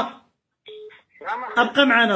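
A short, steady telephone beep on a call line, about a third of a second long, about two-thirds of a second in, between phrases of a voice heard over the call.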